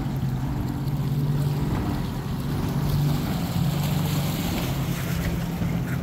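A steady low engine hum holding one even pitch throughout, with wind buffeting the microphone.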